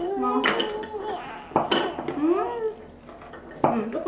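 A wooden toy knife knocking against a wooden toy fruit and board in a few sharp clicks: one about half a second in, one near the middle and one near the end, with voices talking in between.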